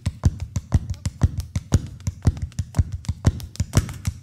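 Traditional Québécois step dancing: hard-soled shoes tapping a miked wooden board in a fast, even rhythm, about four heavy beats a second with lighter taps between.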